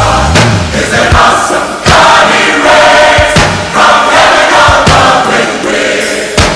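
A choir sings a contemporary worship song over a band, with drum hits about every three-quarters of a second.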